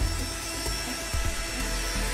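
Corded electric pet clippers buzzing steadily as they shave through a Samoyed's thick white coat, under background music.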